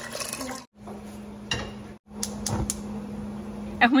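Liquid pouring into a stainless steel pot. Then a gas stove's burner knob is turned, with a few sharp clicks under the pot, over a steady low hum.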